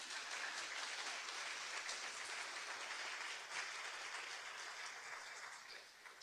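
Audience applauding: a steady round of clapping that tapers off near the end.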